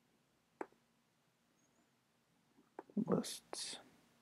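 A single sharp click about half a second in, then near the end a few small mouth clicks and a short, breathy whisper close to the microphone, in two bursts.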